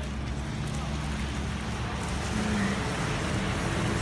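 A trolleybus driving through standing floodwater, its wheels making a steady rushing splash that grows slightly louder.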